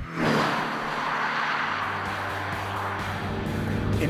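Lexus IS 300h hybrid sedan passing close by at speed: a sudden rush of tyre and wind noise just after the start, with the engine note falling in pitch, then fading away. Background music with low steady notes plays underneath.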